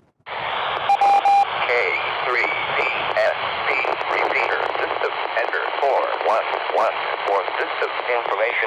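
Handheld 2 m FM transceiver's speaker receiving a distant repeater after the call is unkeyed. A short beep comes about a second in, then a steady, noisy hiss of a weak signal with faint wavering traces in it. The repeater answering shows the transmission reached it.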